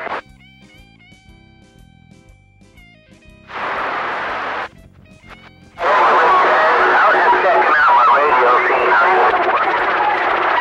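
CB radio receiver on channel 28 picking up skip. At first only faint steady whistle tones over a quiet channel; about three and a half seconds in, about a second of loud hiss from an open carrier. From about six seconds on, loud static with garbled voices and a held whistle tone.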